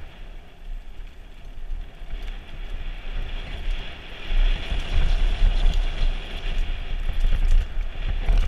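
Trek Remedy mountain bike descending a dirt trail, heard from a helmet camera: wind rumble on the microphone mixed with tyre noise on the dirt and the rattle of the bike. It gets louder about halfway through as the speed picks up.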